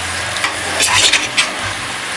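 Mutton and onion masala frying in a pot with a steady sizzle, a steel spatula stirring through it and scraping against the pot several times in the middle.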